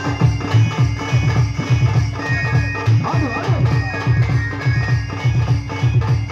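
Live folk music accompaniment: a steady drum beat of about three strokes a second under a sustained, nasal melody line played on an electronic keyboard.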